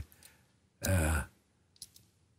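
A man's short voiced sigh or exhalation about a second in, then a faint click from the mouth near the end.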